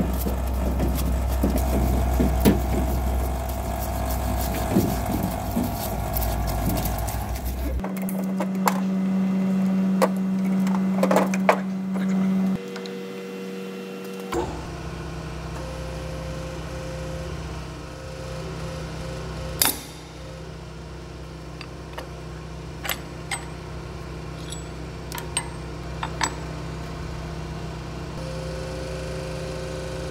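Parts-washer pump running, with solvent pouring from the hose over a hydraulic cylinder rod: a steady low hum under splashing liquid. About eight seconds in, the sound cuts to a steady electric hum. From about fourteen seconds a hydraulic press hums steadily, with scattered metal clicks and taps and one sharp click near the twenty-second mark.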